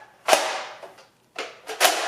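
Sharp plastic clacks from a Nerf Modulus Tri-Strike blaster being handled: one about a third of a second in that fades quickly, a softer one, and another sharp one near the end.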